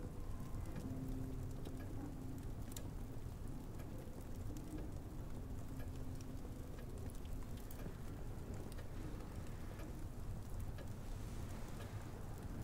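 Quiet, steady low ambience with faint scattered ticks and crackles and a faint low hum that comes and goes.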